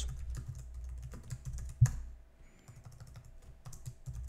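Typing on a computer keyboard: a run of irregular key clicks, with one louder keystroke just under two seconds in and fewer keys after that, over a steady low hum.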